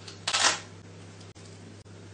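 A single short rasp of a hook-and-loop picture card being pulled off a PECS communication book, about a quarter second in, over a steady low hum.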